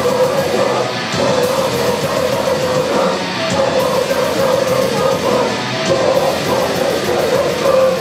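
Live metal band playing loud, with distorted electric guitars, bass and drums, and a vocalist shouting over them.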